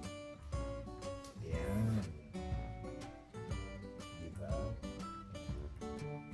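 Background music: a plucked acoustic guitar playing a tune of steady, clearly separated notes.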